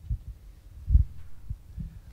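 Handling noise: a few dull, low thumps, about four in two seconds, the loudest about a second in.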